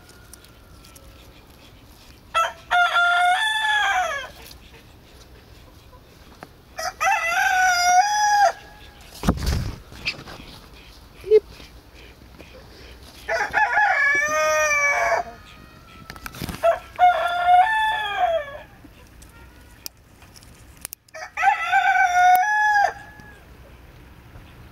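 A rooster crowing five times, each crow lasting about one and a half to two seconds, with pauses of a few seconds between them. There is a single low thump about nine seconds in.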